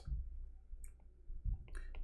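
A few faint, scattered clicks and taps of a stylus on a drawing tablet while handwriting, over a low steady hum.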